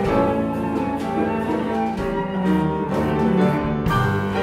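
A small ensemble playing: a Steinway grand piano with cello and double bass, in a steady run of sustained low string notes under piano chords.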